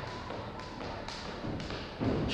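Light taps and thuds from a heavily loaded barbell and its plates shifting during a back squat rep, about two a second, with a soft breathy hiss from the lifter.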